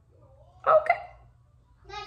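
A single short, sudden vocal sound from a person, a bit over half a second in and lasting about a third of a second, its pitch sliding upward. Speech begins just before the end.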